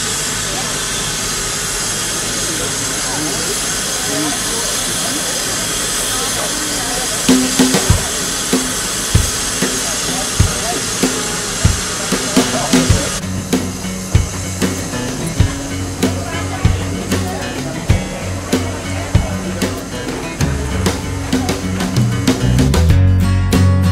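Steam locomotive venting steam with a loud, steady hiss that falls away about halfway through. Background music with a drum beat comes in under it about a third of the way in and carries on.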